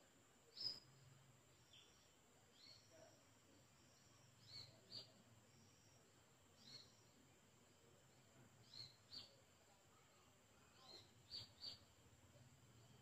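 Faint bird chirps: short, high, falling notes, single or in quick pairs, every second or two over quiet room tone.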